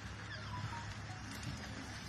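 Steady outdoor background hiss with a low hum, and a few faint, short, high bird calls over it.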